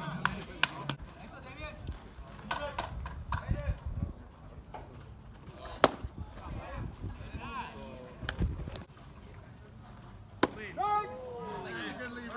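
A baseball game with voices calling out from the field, several short knocks, and one loud, sharp crack of a baseball impact as the batter swings, about six seconds in.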